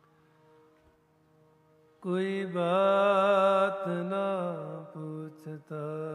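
Harmonium drone held softly, then about two seconds in a singing voice enters loud with a long held, wordless note that wavers in pitch over the harmonium, the opening alaap of a Sikh shabad kirtan.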